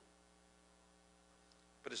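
Near silence with a faint, steady electrical mains hum in the recording.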